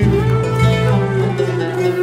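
Turkish classical music ensemble playing a short instrumental interlude in makam Bayati between sung lines, led by plucked strings and holding steady notes.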